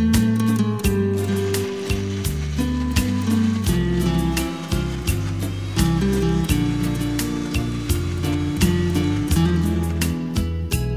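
Electric mixer grinder running under background music with a steady beat and plucked-string notes.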